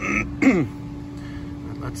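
A man clears his throat once, loudly, over a steady low hum.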